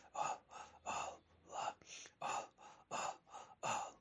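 Rhythmic, forceful breaths by a voice, about three a second, breathy with no sung pitch, in the manner of a Sufi breathing zikr between the sung lines of the hymn.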